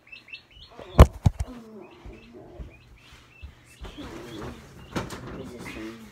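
Repeated short, high chirps, with two sharp knocks about a second in and low voice-like sounds under them.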